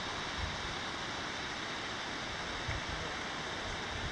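Steady outdoor rushing noise over the canyon, with a few brief low bumps of wind on the microphone, about half a second in and again near three seconds.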